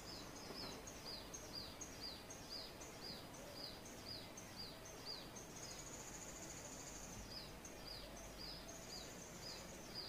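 A small bird calling, faint and high: short falling chirps repeated about three times a second, broken by two longer trills in the second half.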